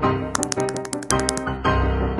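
Piano background music with changing chords, with a quick run of about a dozen sharp clicks in the first second or so, like typewriter keys.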